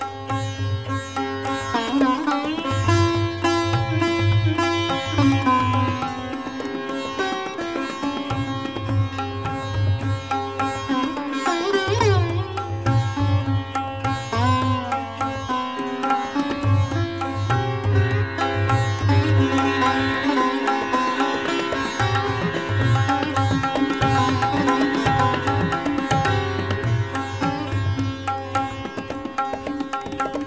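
Sitar playing a fast drut gat in Raag Puriya in teentaal, with gliding bends of the string, over intermittent low drum strokes.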